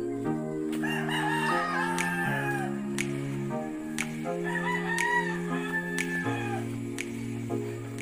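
A rooster crowing twice, each crow lasting about two seconds, over background music of steady held notes.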